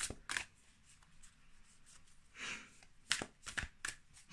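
A deck of oracle cards being shuffled by hand: a few sharp card snaps at the start and a cluster of them near the end, with a soft rustle in between.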